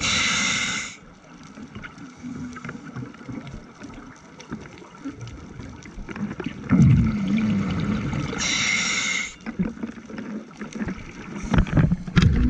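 Scuba breathing through a demand regulator, heard underwater: a hissing inhalation of about a second at the start, a long quieter pause, then exhaled bubbles gurgling up, followed by a second one-second hissing inhalation. More bubbles gurgle near the end.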